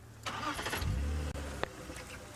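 Game-drive vehicle's engine starting, the low rumble catching about a second in, followed by a sharp click near the end.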